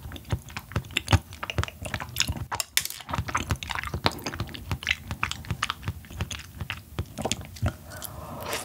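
Close-miked chewing of soft, fatty yellow stingray liver: a quick, irregular run of wet mouth clicks and smacks.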